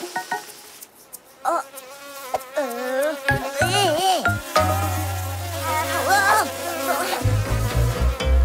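Cartoon sound effect of bees buzzing: a wavering, pitched buzz that thickens toward the end as a swarm of bees gathers.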